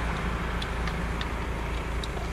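A vehicle engine idling steadily, with a few faint, irregular clicks from a jack lifting a caravan to change a punctured tyre.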